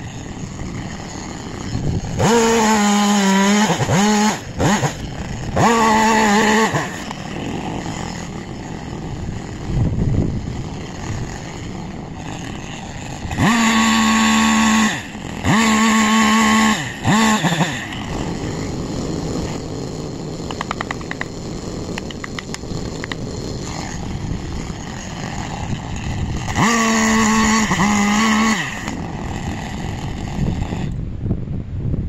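Battery-powered Husqvarna top-handle chainsaw running in five short bursts of about two seconds each, cutting into an ash trunk. It gives a steady electric whine that dips briefly in pitch near the end of the first and last bursts.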